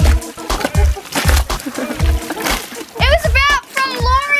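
Water splashing as a hooked shark thrashes at the surface beside the boat, under excited high-pitched squeals and laughter from the people on board.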